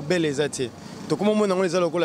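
A man talking at an ordinary pace, pausing briefly about a second in.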